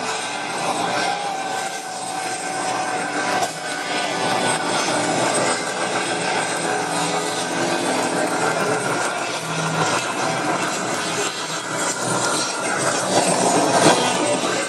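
A live rock band playing loudly through a large outdoor concert PA, heard from within the crowd on a phone microphone, so the music comes through as a dense, distorted wash.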